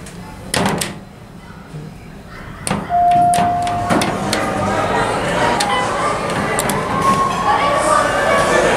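OTIS hydraulic elevator car clunking about half a second in and again a little before the middle, followed by a single steady electronic tone lasting about a second. The car doors then slide open and voices from the room beyond come in.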